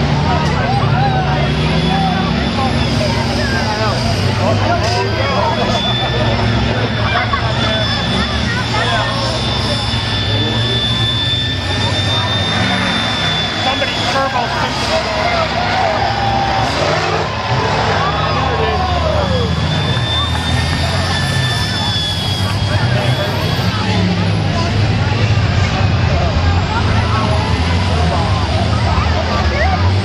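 School bus engines running hard as the buses drive and crash in a demolition derby, under a constant din of crowd voices.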